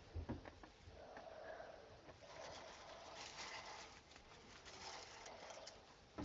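Milk poured from a plastic jug into a bowl of chocolate puffed-rice cereal: a faint, steady splashing of the stream on the cereal that lasts a few seconds, after a couple of soft knocks near the start.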